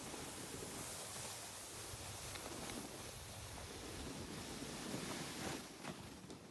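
Skis sliding over groomed snow: a steady, faint hiss mixed with wind on the microphone. It swells briefly near the end, then drops away.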